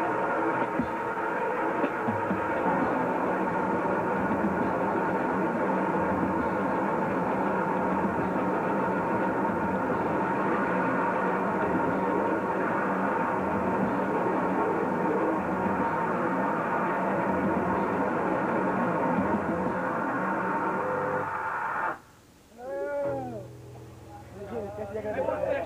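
Noisecore band playing live: a loud, dense, unbroken wall of distorted electric guitar noise that stops abruptly about 22 seconds in, followed by a brief wavering pitched sound.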